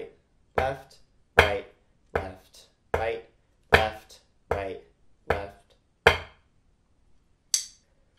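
Wooden drumsticks playing slow flam accents as quarter notes on a drum practice pad, one stroke about every three quarters of a second, with the sticking "flam, tap, tap" spoken along with the strokes. The strokes stop about six seconds in, and a brief light click follows near the end.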